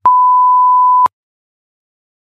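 A single loud electronic beep, one steady mid-pitched tone lasting about a second that cuts off sharply. It marks the end of the exam's reading time and the start of the recorded listening task.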